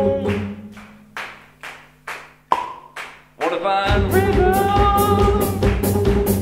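Live band with vocals, guitars and drums at a breakdown. The music drops to a low held note and a sparse beat of sharp clicks, about two a second. Singing comes back about three and a half seconds in, and the full band with drums returns at about four seconds.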